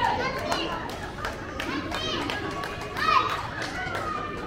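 Several voices shouting and calling over one another on a football pitch, some of them high-pitched like young people's voices, with a louder shout about three seconds in.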